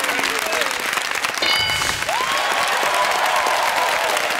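Studio audience and contestants applauding for a good answer. A short bright chime sounds about a second and a half in as the answer is revealed on the board, and over the clapping someone lets out a long, high held whoop.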